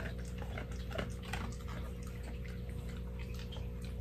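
Dog chewing a small crunchy biscuit treat: soft, irregular crunches and mouth clicks over a faint steady hum.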